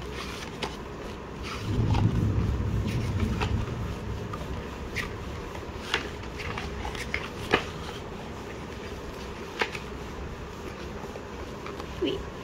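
Pages of a photobook being turned and handled by hand: soft paper rustles and scattered light clicks, with a louder, low handling rustle for a couple of seconds near the start.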